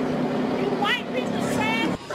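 A car engine running under steady outdoor street noise, with a voice crying out briefly twice, about a second in and near the end.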